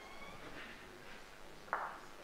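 Faint, steady background noise of a quiet indoor room, with one short soft rush of noise near the end.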